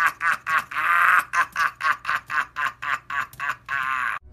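A man's long, loud laugh: a rapid run of 'ha' pulses, about four or five a second, with one longer held note about a second in.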